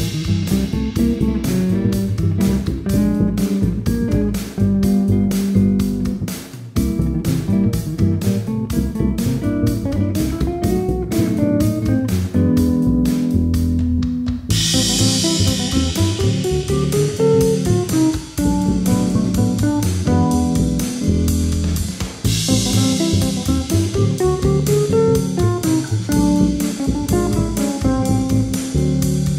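Funky jazz tune played on layered basses, six-string electric bass, upright bass and fretless bass, over a steady drum beat.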